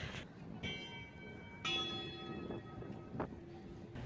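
A bell is struck twice, about a second apart, and each strike rings on and slowly fades. It sounds faint against the background.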